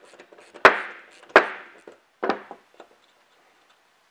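Three sharp metal clinks with a brief ring after each, and a few lighter ticks, as a wrench and loose parts knock against the hand-crank hoist unit while its nylock nut and axle are taken off.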